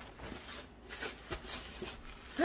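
Paper wrapping rustling and crinkling faintly as a gift package is unwrapped by hand, with a few short crackles.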